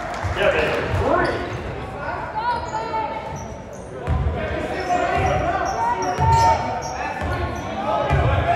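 Basketball game sounds in a gym: a ball bouncing on the court, with thuds about once a second in the second half, short high squeaks of sneakers on the floor, and voices echoing in the large hall.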